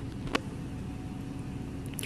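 Low steady background hum in a pause between speech, with a single short click about a third of a second in.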